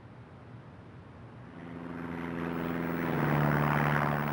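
Propeller aircraft engine hum fading in from about a second and a half in and growing steadily louder.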